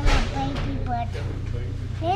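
A young child's voice making wordless sounds for about a second, over a steady low hum. A brief knock comes right at the start.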